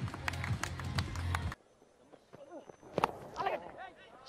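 Music with steady bass notes, and hand-clapping over it, for the first second and a half after a boundary, cutting off suddenly. Then faint crowd voices and a single sharp knock about three seconds in: a cricket bat edging the ball.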